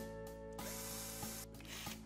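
Soft background music holding steady chords. About half a second in, a rough scratchy hiss lasts about a second: a twist bit boring a pilot hole into the wooden cabinet door.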